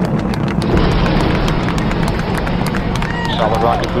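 Space shuttle rocket exhaust rumbling steadily with a dense crackle, heard around the time the solid rocket boosters separate. A radio voice comes in near the end.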